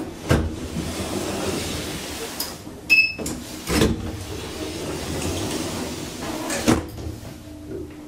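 Elevator landing door being opened and the car entered: three sharp thumps from the door and its latch, with a short electronic beep about three seconds in.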